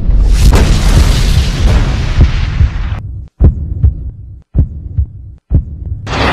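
Station ident sound design: a loud rushing whoosh over a deep rumble that cuts off abruptly about three seconds in, followed by a series of short booming hits separated by brief silences.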